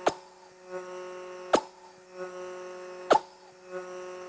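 Vacuum cupping machine running with a steady hum while a glass suction cup is worked in short strokes over the skin, with three sharp clicks evenly spaced about a second and a half apart.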